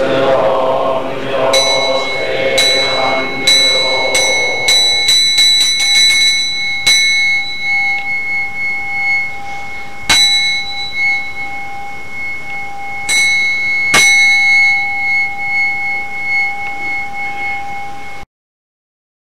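A group of voices chanting, fading out in the first few seconds, while a Buddhist bowl bell is struck over and over, the strikes coming faster and faster, then a few single strikes a few seconds apart, each one ringing on.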